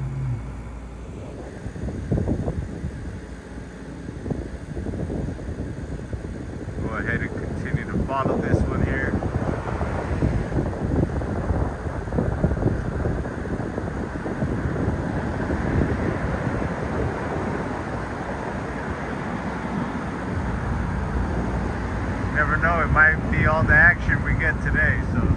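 Outdoor street noise: wind on the microphone, an uneven rumble, mixed with passing traffic.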